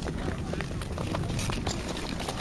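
Wind noise on the microphone over frozen open ice, with a scatter of short sharp clicks and scrapes from ice skates on the natural ice.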